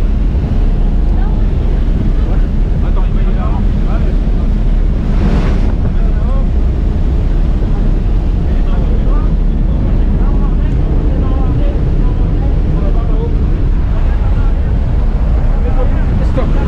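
Steady, loud drone of a jump plane's engine and rushing air heard from inside the cabin, with wind buffeting the microphone.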